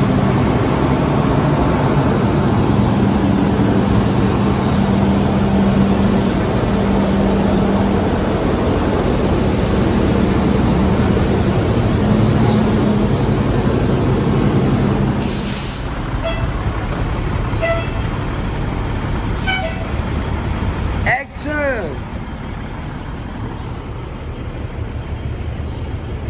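Fire engine's diesel engine running steadily with a low hum. About fifteen seconds in there is a short burst of air hiss and the engine sound falls away.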